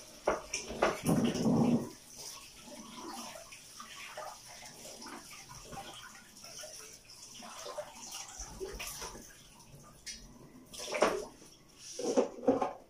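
Water running and splashing at a kitchen sink as a freshly peeled vegetable is washed by hand, with a few louder irregular bursts and knocks, the loudest about a second in and again near the end.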